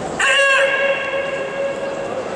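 A karate kiai: one short, sharp, high-pitched shout about a quarter of a second in, its pitch lingering in the hall's echo for more than a second.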